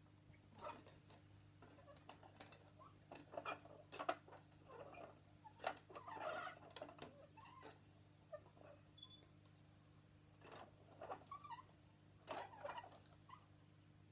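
Faint, scattered clicks and rustles of a plastic teaching clock being handled as its hands are turned to a new time.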